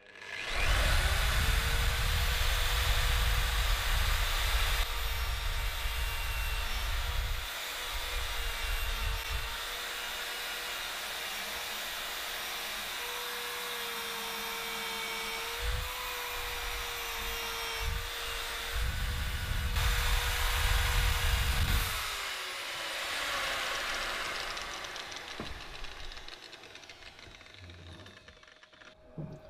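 Angle grinder with a twisted-knot wire wheel spinning up and scrubbing rust off a threaded steel dumbbell bar held in a vise, with heavy rumbling passes as the wheel bites into the bar. It is switched off and winds down over the last few seconds.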